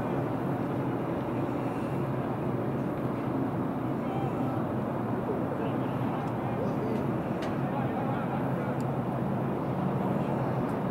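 Steady outdoor background rumble with a low hum, faint distant voices of players on the pitch, and a single sharp tap about seven and a half seconds in.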